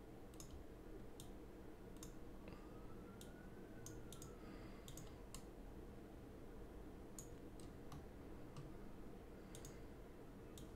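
Computer mouse clicks, about a dozen short, sharp, faint clicks at irregular intervals over a low steady room hum.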